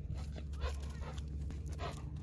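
A dog vocalising twice with short whiny sounds, about half a second in and again near the end, over a steady low rumble.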